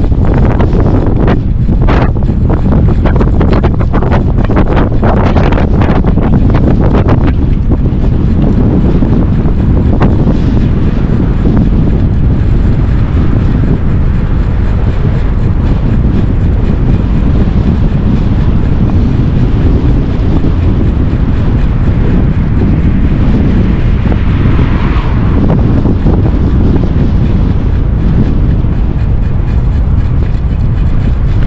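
Heavy wind buffeting on the camera microphone of a speed e-bike riding at about 30 km/h into a hard wind. A run of sharp clicks and knocks fills the first seven seconds, and a car passes on the adjacent road about 25 seconds in.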